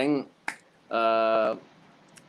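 A single sharp snap-like click, then a man's voice holding one steady note for about half a second.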